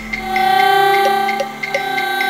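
Electronic music: sustained synthesizer tones layered into a held chord over a steady ticking pulse of about three ticks a second. The bass drops out about half a second in.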